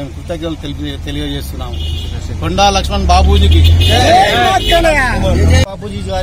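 Men's voices talking outdoors over a steady low rumble of street traffic; about halfway through, several voices rise loud together, then break off suddenly near the end.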